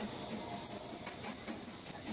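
Crushed quartz ore, in pieces of about 10 to 15 mm, pouring off a conveyor into a steel holding bin: a steady, quiet rattle of many small stones hitting the steel.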